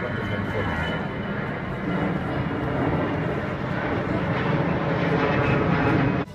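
A loud, steady rushing rumble that slowly grows louder and then cuts off abruptly at the end.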